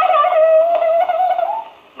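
A man's voice holding one long, high, wavering wail that cuts off suddenly shortly before the end.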